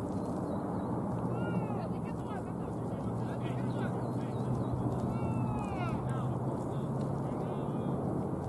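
Steady outdoor background noise with a low hum underneath. Three short, high, arching calls break through it: about a second and a half in, around five seconds, and near the end.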